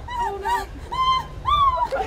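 A run of about five short, high-pitched yelps, each rising and then falling in pitch.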